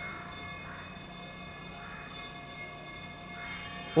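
Steady background hum made of several sustained tones, with no speech over it.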